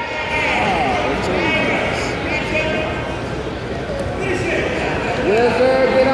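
Voices of people calling out to a wrestler over the steady background chatter of a crowd in a gym.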